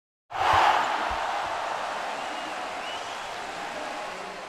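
Arena crowd noise that swells up at once and then slowly settles, with a basketball bouncing on a hardwood court twice near the start.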